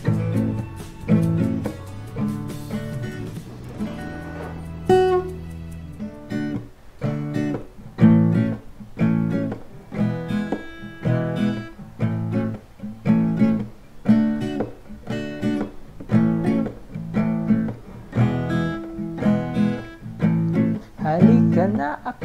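Acoustic guitar strummed in a down-up pattern through the chords D, A, E and A. A chord is left ringing briefly about four seconds in, then steady, even strumming resumes.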